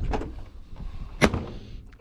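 A single sharp bang about a second in, a hard object knocked or set down while items are handled, with a couple of lighter knocks at the start.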